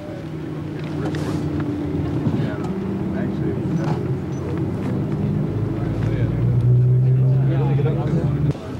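Car engines running at low speed with a steady low hum that grows louder toward the end, while voices of roadside onlookers are heard faintly over it.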